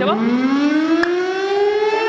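Studio siren sound effect signalling that time is up, a single wailing tone climbing slowly and steadily in pitch.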